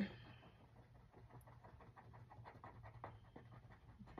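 Faint, quick back-and-forth strokes of a pen tip rubbing on a paper card as a small square is colored in.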